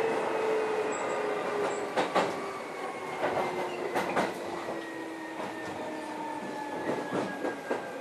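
Keio 7000 series chopper-controlled electric train running, heard from inside the car. Its motor whine falls slowly in pitch as the train slows, with sharp wheel clicks over rail joints about two and four seconds in.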